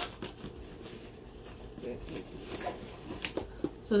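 Soft rustling and a few light clicks as a pair of plastic Beats headphones is picked up and handled.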